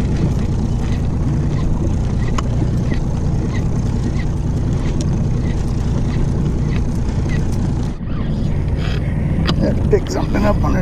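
2017 Evinrude E-TEC 90 hp outboard idling steadily, a low even hum under wind and water noise.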